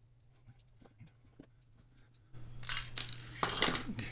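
A few faint ticks of a small driver turning out a knife screw, then a few sharp metallic clinks and clicks from about two and a half seconds in, as the metal handle scale of a folding knife is lifted off its frame and handled.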